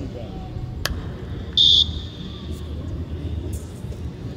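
Outdoor training-pitch ambience with faint distant voices and a low rumble; a sharp click just under a second in, then a short, loud, shrill whistle blast a little after a second and a half.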